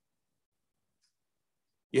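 Near silence, with a man's voice starting to speak just at the end.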